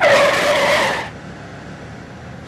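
A screech like skidding car tyres that starts suddenly, lasts about a second and then stops.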